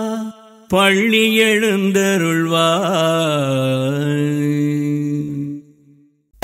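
A man singing a slow, chant-like devotional phrase. His voice wavers in pitch and steps down to a long low held note that fades out shortly before the end. Just before the phrase begins, a previous held note breaks off with a brief pause.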